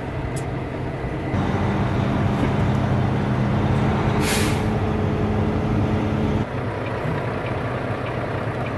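Volvo 780 semi truck's diesel engine, heard from inside the cab as it pulls across a lot. Its note rises and holds from a little over a second in until about six seconds, then drops back. A short, sharp hiss of air from the truck's air system about four seconds in.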